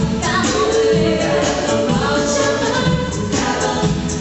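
A cappella vocal group singing in multi-part harmony over a steady vocal-percussion beat.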